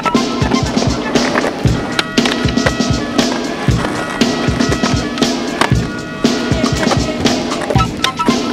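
Skateboard wheels rolling on concrete, with the board clacking and grinding on a concrete ledge, mixed with a music track that has a steady beat.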